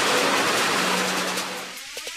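Rushing water of the Boogie Bahn artificial-wave ride, a fast sheet of water pumped over its surface: a steady hiss that fades out near the end.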